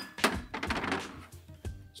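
A sharp click, then rum being poured from a bottle into a steel jigger and tipped into a metal cocktail shaker tin, over background music.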